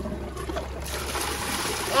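Half of a toilet, cut through and sealed with a plexiglass sheet, flushing: water rushes through the bowl and trapway and out the drain, growing louder about a second in.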